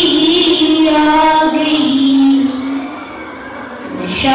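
A boy singing solo into a microphone, holding long notes that slowly fall in pitch, with a softer stretch in the second half.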